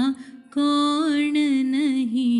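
A woman singing a Hindu devotional invocation to Ganesha, holding long notes with wavering ornaments. She breaks off briefly at the start and comes back in about half a second in.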